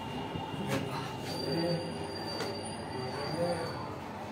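Murmur of people's voices inside a stone stairwell, with a high, steady whistle-like tone that starts about a second in and lasts about two and a half seconds.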